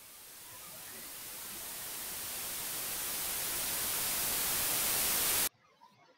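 White-noise riser from LMMS's TripleOscillator synth, swelling steadily louder through a long attack and cutting off suddenly about five and a half seconds in. It is a build-up sweep leading into a drop.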